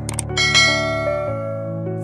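Instrumental passage of a piano ballad: a chord is struck about half a second in and rings out over held low notes.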